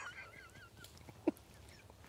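Stifled laughter: one high, wavering squeal that fades out about a second in, followed by one brief sound.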